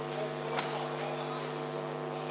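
Indistinct voices in a hall over a steady low hum, with one sharp knock about half a second in.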